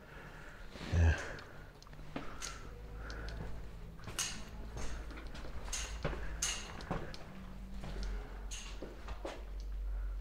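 Scattered clicks and knocks, about one a second, over a low rumble: footsteps and handling noise from a handheld camera being carried through small rooms with tiled floors.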